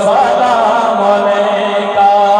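A man's voice reciting an Urdu naat into a microphone, holding one long, nearly steady note with a slight waver just after it begins.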